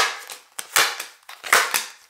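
A tarot deck being shuffled by hand above a table: three sharp snaps of the cards about three-quarters of a second apart, with loose cards dropping onto the spread.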